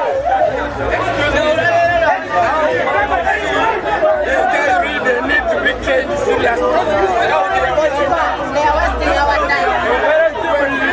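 Many voices talking over one another at once: a crowd's chatter, loud and continuous.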